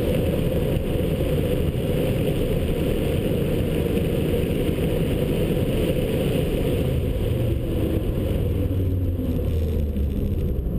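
The BMW 1 Series M Coupe's twin-turbocharged inline-six running hard at speed, heard from inside the cabin along with steady road and wind noise.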